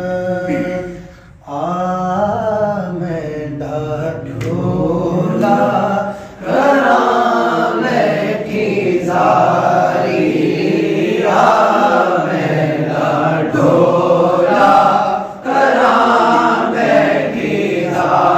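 A male voice sings a naat unaccompanied: long held melodic phrases with ornamented bends in pitch, broken by short breaths about a second and a half in and about six seconds in.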